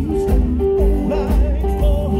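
A live band playing a slow country song: a man singing over strummed acoustic guitar, bass and drum kit, with a steady beat.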